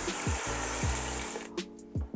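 Broth pouring into a hot stainless pot of roux and sautéed mirepoix, splashing and sizzling; it stops about one and a half seconds in. Background music with a steady beat plays underneath.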